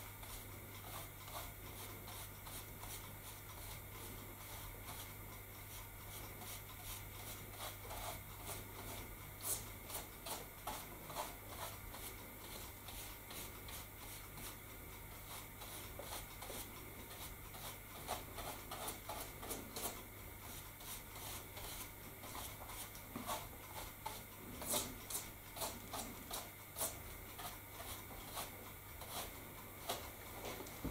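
Small bristle brush dabbing and rubbing on the painted scenery of a model railway layout: faint, irregular scratchy strokes and light taps, over a steady low hum.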